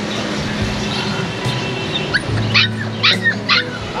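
Dog yipping: about four short, high-pitched barks in quick succession in the second half.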